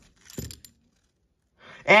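Half-dollar coins clinking against each other inside a paper coin roll as the roll is worked open, with a short sharp click, briefly, in the first half second.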